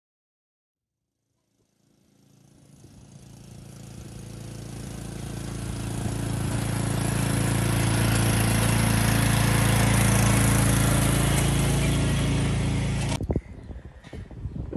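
Cub Cadet riding lawn tractor's engine running steadily while it tows a cart loaded with logs. The sound comes up out of silence and grows louder over several seconds, then is cut off abruptly about a second before the end.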